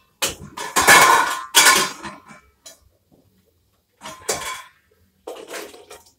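Cookware clattering at the stove as diced potatoes are tipped from a bowl into a soup pot: a long, loud clatter lasting nearly two seconds, then two shorter metal knocks of the pot and lid near the end.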